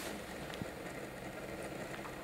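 Quiet, steady room tone of a large hall through the podium microphone, with one faint click about half a second in.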